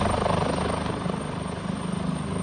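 Helicopter flying overhead, its rotor beating steadily, with a thin high whine running over it.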